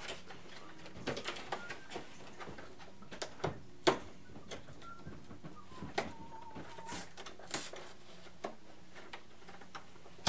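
Plastic packaging on Pokémon card booster packs being torn and crinkled open by hand: irregular crackles and taps, the loudest a little before four seconds in.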